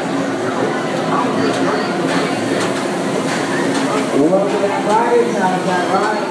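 Background voices and chatter over a steady mechanical hum from a flying roller coaster train and its lift machinery as the train moves up the lift hill.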